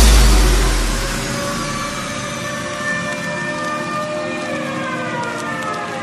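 Breakdown in a dubstep track: a deep bass boom fades out over the first second. Sustained synth tones follow without drums, several of them gliding slowly in pitch like a siren.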